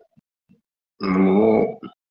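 A man's voice gives one short, loud wordless vocal sound about a second in, lasting under a second.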